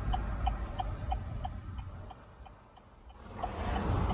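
Quick regular ticking, about four a second, fading out about halfway, over a low rumble from the engineless pickup rolling along the road as it is pushed.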